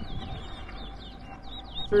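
Caged towa-towa finch singing: a quick, continuous run of high, chirping whistled notes.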